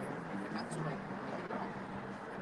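Faint, indistinct voices over a steady hum of city street noise.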